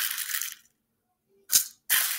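Rice grains dropping from a small spoon into a plastic bowl: a brief rattling hiss, then a shorter one about a second and a half in.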